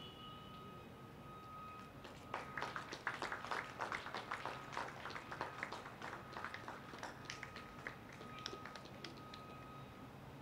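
Faint scattered clapping from a small crowd. It starts about two seconds in, is densest in the middle, and thins out by about nine seconds, over a faint steady high-pitched tone.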